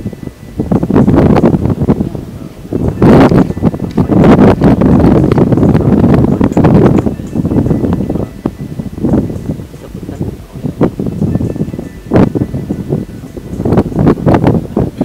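Wind buffeting the microphones in gusts: a loud, uneven rumble that rises and falls, loudest in the first half.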